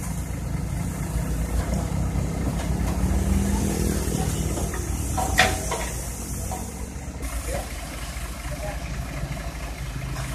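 Diesel engine of a Caterpillar 313D tracked excavator running under load as the machine drives up onto a truck's tilted steel flatbed. The engine note rises a little around three to four seconds in, and there is one sharp knock a little after five seconds.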